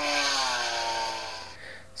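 Sound track of a test video playing in the browser's HTML5 player: a machine-like pitched hum that slowly drops in pitch and fades away about one and a half seconds in.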